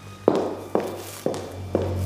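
Footsteps of hard-soled shoes on a hard floor, a woman walking away at an even pace of about two steps a second, four steps in all.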